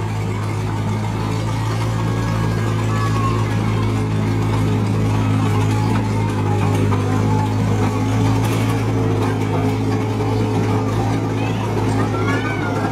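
Small engine of a miniature ride-on train running at a steady, even pitch as the locomotive pulls open passenger carriages round a circular track.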